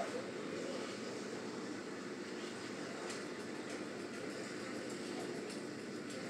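Steady low background hum with a haze of noise, and a couple of faint ticks, one midway and one near the end.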